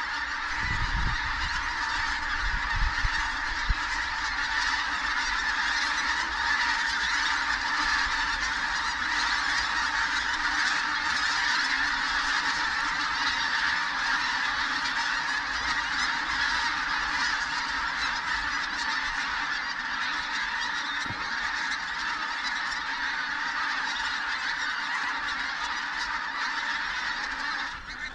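A large flock of pink-footed geese passing overhead: a dense, steady chorus of many overlapping honking calls.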